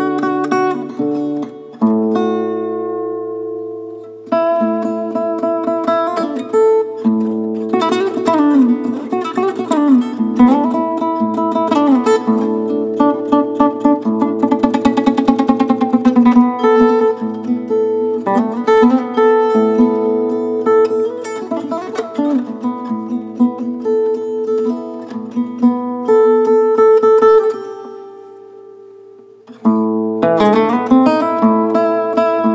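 Solo Fender acoustic guitar playing a kaba melody, with bent and sliding notes over steady held low notes. Near the end a note is left to ring and fade away before the next phrase begins.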